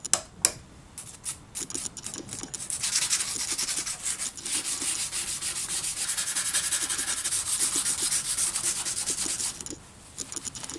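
Light clicks and taps of steel plane parts being handled, then from about three seconds in a steel part of a Stanley No. 4 plane is scrubbed by hand in rapid back-and-forth strokes, a steady dry rubbing that stops just before the end.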